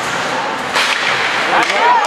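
Ice hockey stick striking the puck in a shot: one short, sharp crack about three-quarters of a second in. Crowd voices rise into shouts near the end.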